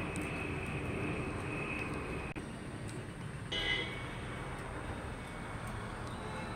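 Steady low background rumble, with a click just past two seconds and a brief high-pitched chirp about three and a half seconds in.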